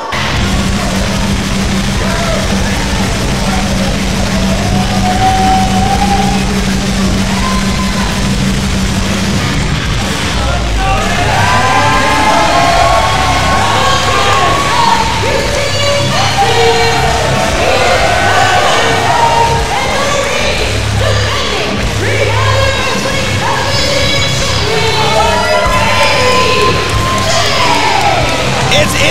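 A wrestler's entrance theme music played loud over the arena speakers, starting abruptly. A singing voice comes in about ten seconds in.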